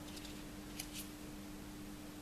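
Faint handling of a folded paper leaflet as it is drawn from a small cardboard box and unfolded: two short papery rustles about a second in, over a steady low hum.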